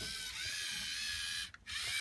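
Lego Mindstorms robot's small electric motors and plastic gears whirring steadily as the robot moves across the floor, with a high whine that bends slightly in pitch. The sound cuts out for a moment about a second and a half in.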